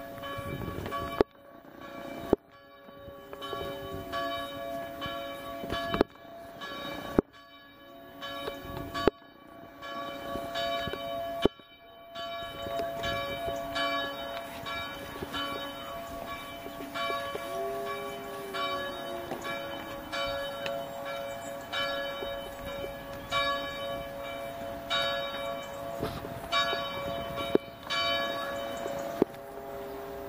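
Church bells ringing, struck again and again over a sustained ringing hum of several tones. The sound drops out abruptly several times in the first twelve seconds, then rings on steadily.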